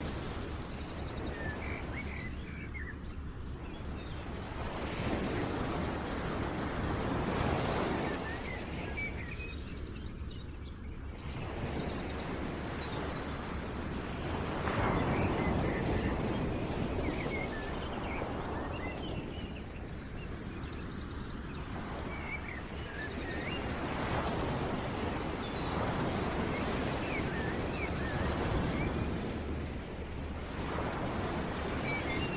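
Background outdoor ambience: a rushing noise that swells and fades about every six or seven seconds, with small bird chirps scattered through it.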